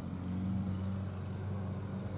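Steady low hum of a running motor, holding an even pitch with no changes.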